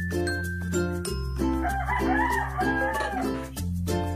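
A rooster crows once for about two seconds in the middle, over background music of sustained bass notes and evenly repeated plucked notes.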